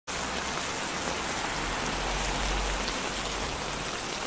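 Steady rain falling, an even hiss with a low rumble that swells slightly in the middle.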